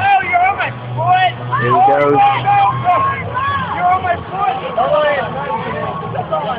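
A crowd of people talking and calling out over one another, with a steady low hum underneath.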